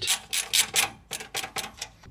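A screwdriver driving the screws that fix a PC power supply to the case, heard as a run of short rasping strokes of metal screw threads, about four a second, growing fainter in the second half.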